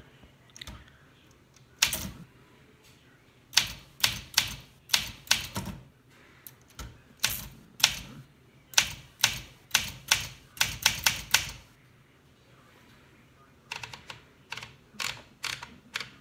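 1964 Olympia De Luxe manual portable typewriter being typed one-handed: sharp single keystrokes in slow, uneven runs with pauses between them.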